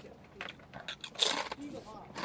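Crinkling of a potato chip bag and crunching as the chips are taken and bitten: a run of short crackly sounds, one sharper about a second in.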